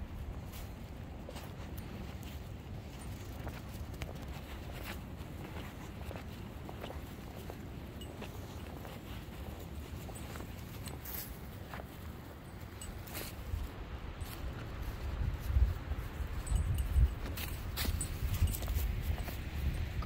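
Footsteps through grass, with wind rumbling on the microphone and scattered light clicks. A few louder low thumps come near the end.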